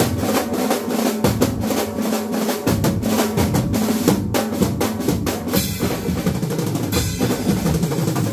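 Acoustic drum kit played in fast rolls and fills across snare, toms, bass drum and cymbals, with a keyboard part sounding underneath.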